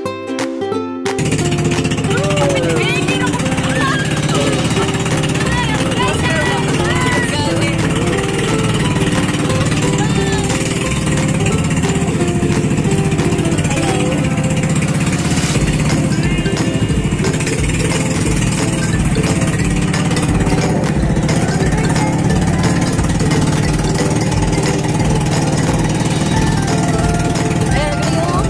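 Engine of a motorised outrigger boat (bangka) running steadily under way at sea. It is a loud, constant drone with a low hum, starting about a second in as ukulele music cuts off.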